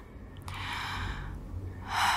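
A woman breathing out audibly in a soft sigh lasting about a second, with another breath starting near the end.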